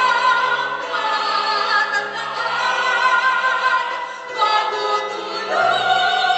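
A choir singing held chords, moving to new chords about four and a half seconds in and again near the end.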